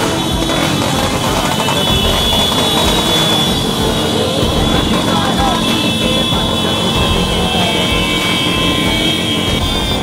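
Many motorcycle engines running together in a slow street procession, with a crowd's voices over them.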